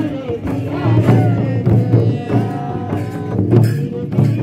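An Oraon tribal folk song performed live: a singer's voice with a mandar, the hand-beaten double-headed barrel drum, struck in a steady rhythm.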